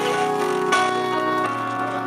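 Live band with saxophone and drum kit playing a Christmas carol: held chords that change about one and a half seconds in, with two sharp accents in the first second.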